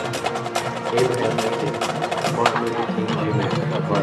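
Marching band percussion at the opening of a field show: a run of sharp, irregular clicks over several sustained held tones.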